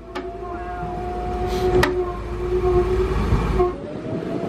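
Hydraulic liftgate of an enclosed car-hauler trailer running as the deck lowers a car: a steady two-note whine over a low hum, slowly growing louder, with a sharp click just under two seconds in. The whine stops briefly near the end.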